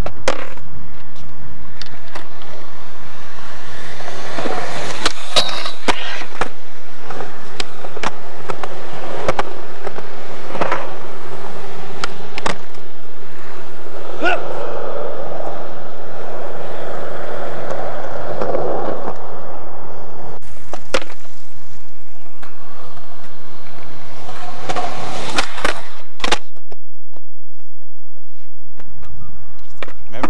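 Skateboard wheels rolling over concrete, with repeated sharp clacks of the board hitting the ground as tricks are popped and landed. The rolling grows quieter near the end.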